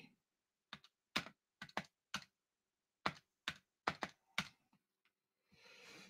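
Keys tapped on a computer keyboard: about a dozen short, separate clicks at irregular spacing, some in quick pairs, stopping after about four seconds.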